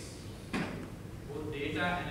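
A single sharp knock about half a second in, followed by speech starting just over a second in.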